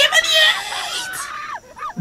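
A man screaming with excitement, loud and rough for about the first second, then breaking into shorter, quieter cries.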